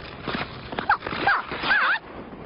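Cartoon sound effects: a rushing, scuffling noise with several short, squeaky animal-like calls that swoop up and down in pitch, the loudest about a second in and again near the end.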